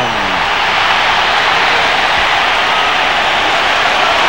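Football stadium crowd cheering steadily after a touchdown.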